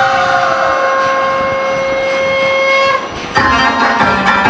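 One long, horn-like note held at a steady pitch after a short downward slide at its start, stopping about three seconds in; the song's music with drums comes in just after.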